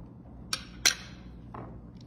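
Two sharp clicks about a third of a second apart, the second louder with a short ring, from handling a jar of queso dip and its lid over a glass dish.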